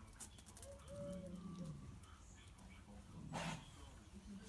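Dogs at rough play, with a low growl about a second in and a thin whine just before it. About three and a half seconds in comes a short, louder rasping burst.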